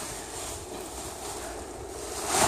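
Steady rushing wind noise on the phone's microphone, with no distinct tones or knocks.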